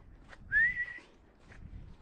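A single short whistle about half a second in, rising in pitch and then held briefly before it stops.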